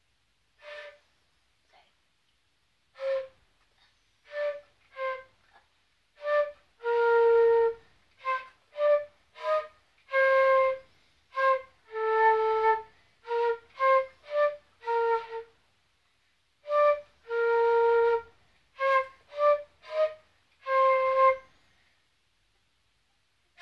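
Solo concert flute playing a simple melody: a string of short, separated notes with brief silences between them and a few longer held notes.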